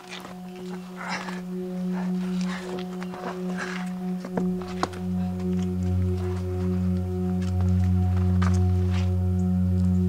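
A sustained, swelling drone from a film score: a held chord of steady tones, joined about four and a half seconds in by a deeper bass tone, growing louder.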